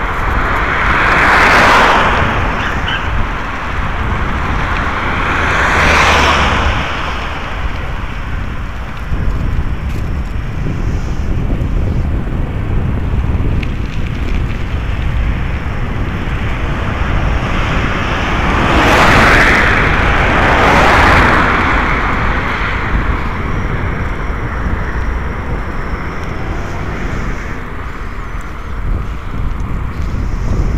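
Steady wind rumble on the microphone with road noise from moving along a street, and passing cars each rising and falling in a whoosh: one about a second in, one a few seconds later, and two close together past the middle.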